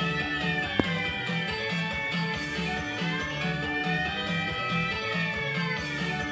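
Jackpot win music from Blueprint Gaming's Wish Upon a Leprechaun slot machine: a plucked guitar tune over a steady beat. A single sharp click comes a little under a second in.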